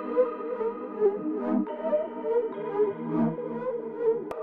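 A short, simple synth melody played back from the FL Studio piano roll on an Arturia Analog Lab V instrument. It is a few sustained mid-range notes with no bass or drums under them, the last note resolving the phrase.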